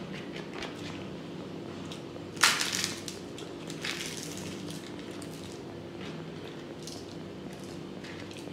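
A crisp papad crunching and crackling as it is crushed by hand into rice, loudest in one sharp burst about two and a half seconds in and again more lightly near four seconds, with softer rustling of rice between. A steady low hum runs underneath.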